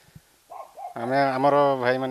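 A man's voice holding one long, drawn-out vowel, a hesitant sound before speaking, after a brief higher-pitched sound with a bending pitch.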